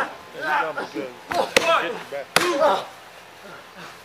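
Two sharp smacks from the wrestling action, under a second apart, the first the louder, amid men's voices.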